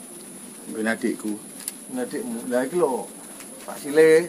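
A dove cooing in a few short low phrases.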